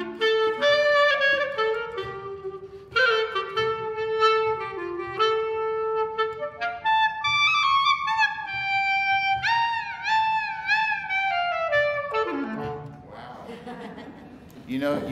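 Solo clarinet playing a klezmer melody, the notes bent and ornamented in klezmer style rather than played straight, with swooping pitch bends near the end of the phrase. It stops about twelve seconds in.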